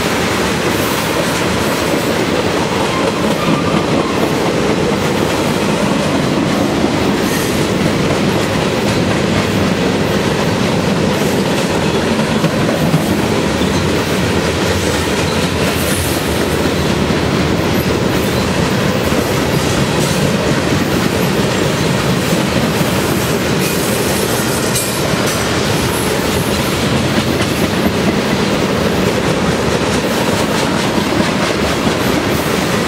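Freight cars (tank cars, boxcars and covered hoppers) rolling steadily past close by: a continuous loud rumble and clatter of steel wheels on the rails, with clicks as the wheels cross rail joints.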